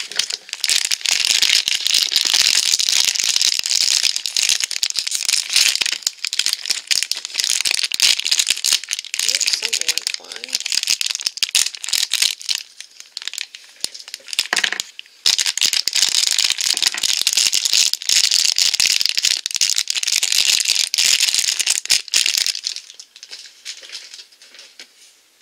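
Crinkly plastic blind-bag packaging being torn open and handled, a dense crackling and rattling, with a short break about fifteen seconds in. It stops shortly before the end.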